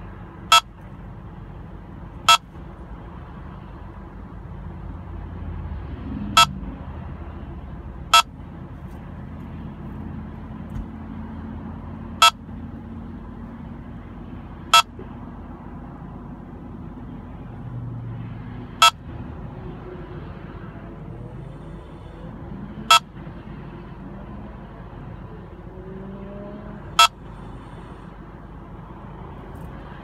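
Escort Passport Max radar detector sounding its K-band alert, nine single short beeps about two to four seconds apart, over steady car and road noise. The sparse beeping goes with a weak K-band signal near 24.15 GHz, the band used by other vehicles' collision-avoidance radar, reaching the detector with its traffic-sensor rejection switched off.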